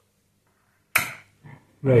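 Radio of a Sanyo GXT-4730KL stereo console coming on, with music starting suddenly and loudly through its speakers near the end. It follows a brief sharp sound about a second in.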